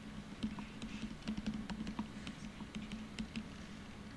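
Light, irregular taps of a stylus on a tablet screen as electron dots are drawn, over a steady low hum.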